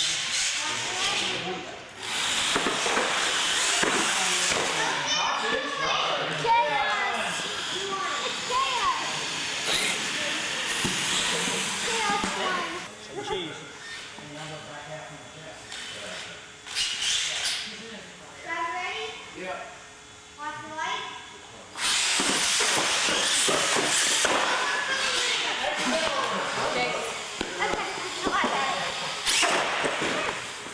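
Radio-controlled monster trucks racing on a concrete floor: two long stretches of loud whirring and hissing from the motors and tyres, one from about two seconds in until about twelve, the other over the last eight seconds, with people talking in a large hall throughout.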